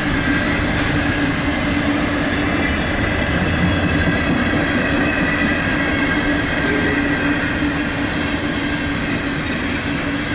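Freight train cars rolling steadily past at close range: a dense rumble of wheels on rail with thin, steady squealing tones from the wheels, and a higher squeal from about seven to nine seconds in.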